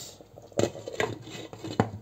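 Glass pot lid with a metal rim being set onto a stainless-steel pan, clinking against the pan's rim three times as it settles into place.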